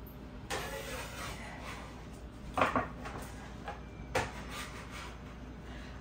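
Food prep handling: sliced cucumber being gathered off a wooden cutting board and dropped into a glass bowl, giving a few soft knocks and clatters, three of them a little sharper, about a second and a half apart.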